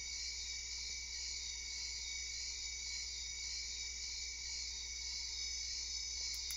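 Running Press miniature Ghostbusters PKE meter toy playing its electronic sound effect through its tiny speaker: a thin, high buzz with a slow, even warble, on its slow setting. A steady low hum lies beneath.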